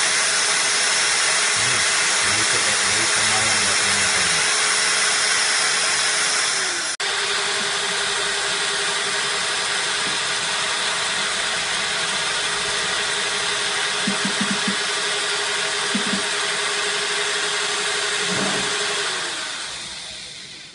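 Power drill running steadily at about 550 RPM, driving an impeller in a water tank: a steady motor whine over water churning. The sound breaks off sharply about seven seconds in, then runs on steadily and fades near the end.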